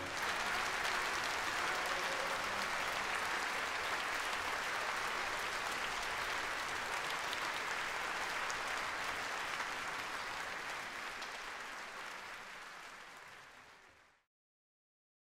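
Large concert-hall audience applauding steadily, fading out over the last few seconds.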